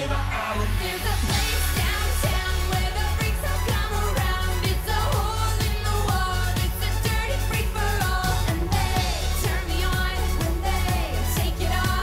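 Live electro-pop song: a woman singing into a handheld microphone over a heavy bass beat with electronic backing.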